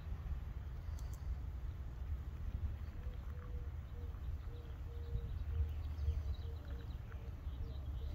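Coffee being poured from a stainless steel French press into a ceramic mug, a faint trickle under a steady low rumble of outdoor background noise. A faint, broken steady tone comes in about three seconds in.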